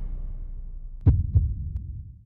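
Broadcast transition sound effect: a deep rumble dies away, then two low thumps in quick succession just after a second in, like a heartbeat.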